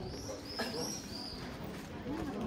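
A small bird chirping: a quick run of about four short, high arched notes in the first second and a half, over the murmur of people talking in the street.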